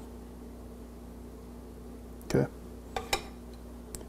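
A metal serving spoon clinking lightly against a ceramic bowl, two short clinks about three seconds in, over a steady low hum.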